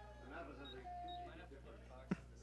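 Faint background voices at the ballpark, with one briefly held note about half-way through, over a steady low hum.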